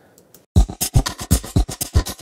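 A drum loop played through Logic Pro's Step FX plugin, chopped by the step gate and effects into a fast, stuttering, glitchy run of hits. It starts abruptly about half a second in.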